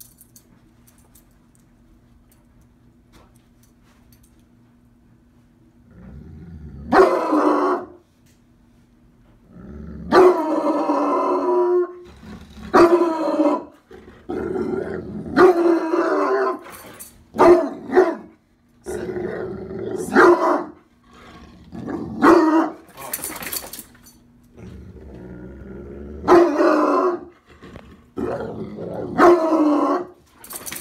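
Bloodhound barking repeatedly in deep, pitched barks, some drawn out to a second or two, starting about six seconds in: protective barking at a new person.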